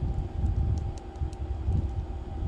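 Irregular low rumbling handling noise with a few faint light clicks as a wooden bead bracelet is turned and twisted in the fingers, over a faint steady hum.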